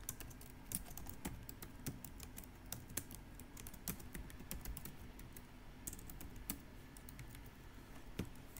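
Computer keyboard typing: faint, irregular keystrokes, a few a second, in short runs as a line of code is entered.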